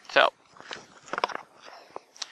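Plastic gold pans and dry gravel being handled: a handful of short, irregular gritty scrapes and crunches as a second pan is moved into place below the first.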